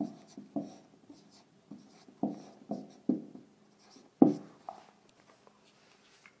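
Marker pen writing on a whiteboard in short separate strokes, the loudest about four seconds in.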